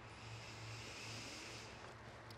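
Faint outdoor background: a steady low hum, with a soft swell of distant noise that rises and fades over about a second and a half.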